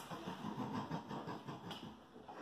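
Muffled, stifled laughter and breathing from two young men doubled over, fading out near the end.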